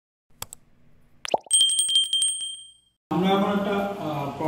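Subscribe-button animation sound effect: a couple of mouse clicks and a short rising tone, then a bright notification bell ringing with a fast rattle for about a second before dying away.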